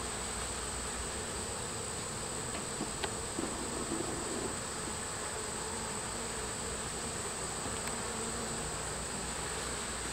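Honey bees buzzing steadily over the frames of an opened hive. A thin, steady high whine runs above the hum throughout.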